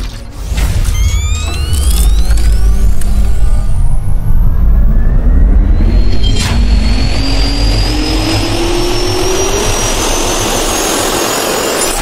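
Intro sound effect of a jet turbine spooling up: a whine climbing slowly in pitch over a deep rumble, with fast rising sweeps in the first few seconds and a sharp hit about six and a half seconds in.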